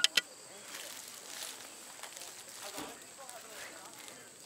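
Ceramic trivet clacking down onto a stack of ceramic trivets right at the start, two sharp clicks. After that there is low outdoor background with faint, distant voices.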